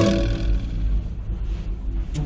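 Low, steady rumbling noise inside a moving cable car gondola. A musical note dies away at the very start.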